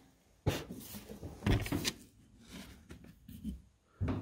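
A run of knocks, clatter and rubbing from a small glass spirit burner being capped to snuff its flame, then picked up and handled. The loudest knock comes about a second and a half in, with fainter handling noise after.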